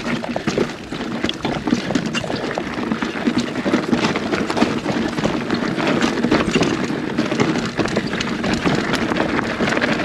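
Polygon Siskiu T8 mountain bike rolling down a loose, rocky dirt trail: tyres crunching and skittering over gravel and stones, with a dense rattle of small clicks from the bike, and wind on the microphone.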